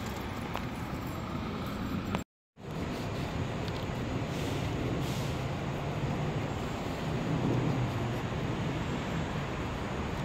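Steady outdoor street traffic noise, a low even rumble, cut by a brief gap of silence a little over two seconds in.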